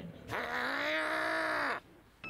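A man's voice holding one drawn-out vocal sound, not words, at a nearly steady pitch for about a second and a half, then cutting off sharply.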